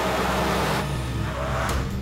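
An SUV driving past: a rush of engine and tyre noise that fades out near the end, over a low steady drone.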